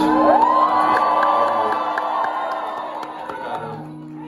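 Concert crowd cheering, with high rising whoops and screams; the cheering fades near the end.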